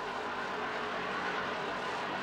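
Cartoon sound effect of a bulldozer engine running steadily as the machine drives forward.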